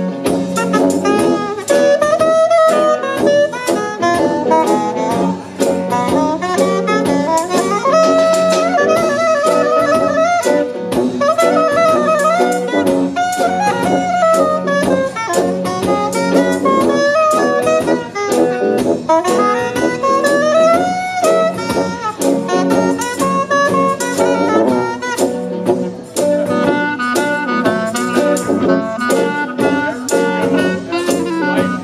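Live trad-jazz band playing an instrumental break: a saxophone solo over tuba, drums and guitar, with a clarinet joining near the end.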